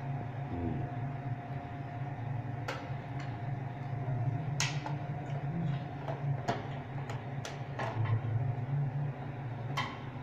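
Sharp plastic clicks and knocks, about five at irregular moments, as the round bottom cover of an Ariston electric water heater is handled and fitted with a screwdriver, over a steady low hum.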